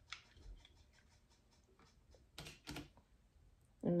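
Plastic handheld lemon squeezer pressing mashed berries: faint clicks and squishes, with two louder short noises about two and a half seconds in.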